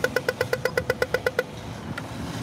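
Pedestrian crossing signal's rapid walk-phase ticking, short beeps about ten a second, telling pedestrians they may cross; it stops about one and a half seconds in.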